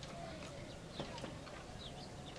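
Faint outdoor background with scattered short, high chirps and a single click about a second in.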